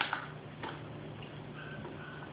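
A few faint, irregular clicks of a spoon against a plastic pudding cup as a child eats, over a low steady hum.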